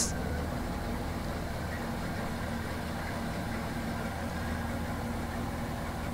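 Nori harvesting boat's engine and machinery running steadily with an even low drone as the boat moves out of the net set.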